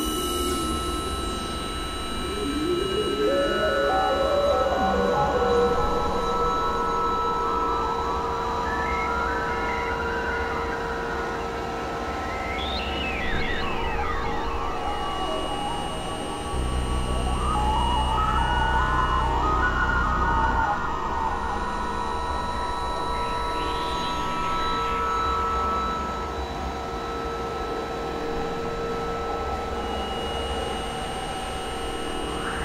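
Experimental electronic drone music: held synthesizer tones over a deep bass drone, with wavering pitch sweeps rising and falling. The bass drone swells louder for about four seconds a little past the middle.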